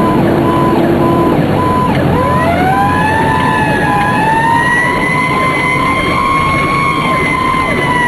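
Fire squad's siren winding up about two seconds in, sweeping up quickly and then climbing slowly into a high, held wail. It is heard over loud engine and road noise, with a rapid, steady beeping running throughout.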